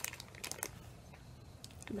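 Faint crinkling and light clicks of the clear plastic wrapping on a small wax melt sample as it is handled, mostly in the first half second.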